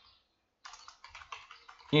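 Computer keyboard typing: after a short pause, a quick run of keystrokes, several a second, about half a second in.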